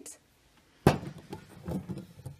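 A small glass mason jar with a metal screw lid set down with a sharp knock about a second in, then lighter clinks and handling as it is settled onto a stack of other filled jars.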